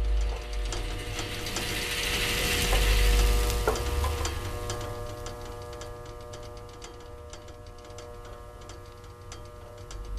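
Rapid mechanical clicking and ticking, like a ratchet or clockwork, over a steady hum, with a hiss that swells to a peak about three seconds in and then fades.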